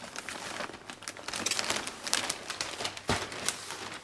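Plastic bag crinkling as compost is shaken out of it into a nursery pot, with scattered crackles and ticks of falling compost and one thump about three seconds in.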